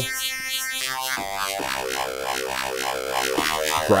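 Serum software synthesizer playing a growly tone from the "Angry" wavetable. An LFO sweeps the wavetable position, so the timbre pulses about twice a second.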